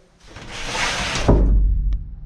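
Camera handling noise: a rustling rush that swells over about a second, then a low rumble, ending in a single sharp click.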